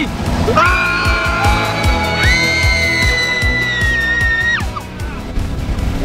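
Several people screaming together on cue, long held high-pitched screams at different pitches that start about half a second in and break off with a falling pitch after about four seconds.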